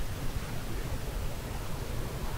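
Steady rushing noise of distant sea surf mixed with wind, with a fluctuating low rumble of wind on the microphone.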